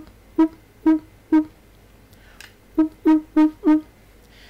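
Beatbox trumpet: a brass-like tone made by mouth, lips held in whistle position with the air pushed from the cheek. It comes as short, detached notes all on one pitch, four spaced notes, a pause, then four quicker ones.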